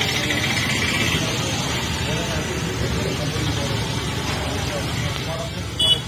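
Steady din of road traffic with faint voices of people nearby, and a brief high-pitched beep just before the end.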